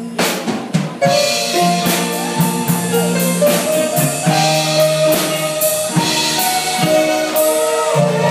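Live band playing with the drum kit prominent: a quick drum fill in the first second, then a steady beat with cymbal hits under held guitar and instrument notes.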